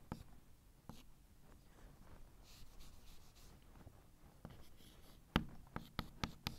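Chalk writing on a blackboard, faint: short scratchy strokes with a few sharp taps of the chalk, the loudest tap near the end.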